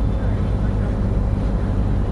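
A steady low hum under an even background hiss, with no clear speech.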